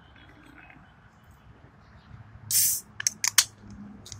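Aluminium can of carbonated vodka soda being opened: a short, loud hiss of escaping gas about two and a half seconds in, followed by a few sharp clicks from the tab.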